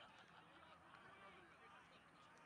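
Near silence on an outdoor field, with faint, short distant calls that rise and fall in pitch.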